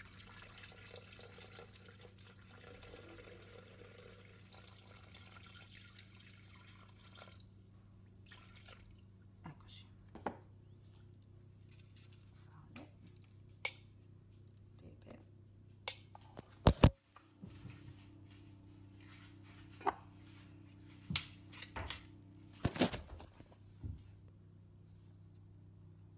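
Milk being poured into the bowl of a Bimby (Thermomix) food processor as it weighs 500 g for béchamel: liquid pouring for the first several seconds, then scattered knocks and clicks of handling. The loudest are a pair of sharp knocks about two-thirds of the way in and another near the end, over a low steady hum.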